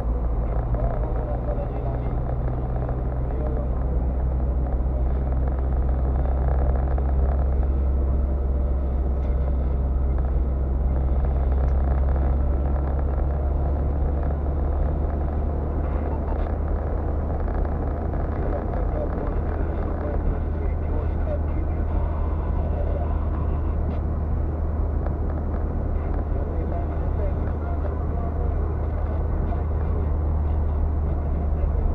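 Steady low drone of a car's engine and tyres on the road, heard from inside the moving car's cabin.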